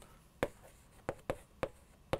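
Chalk writing on a chalkboard: a string of about five short, sharp chalk taps and scrapes as letters are written.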